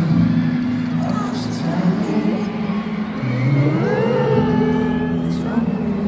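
A live slow pop ballad is amplified through a stadium sound system and picked up on a phone from high in the stands. Held low chords change about three and four seconds in, with voices singing over them and crowd noise.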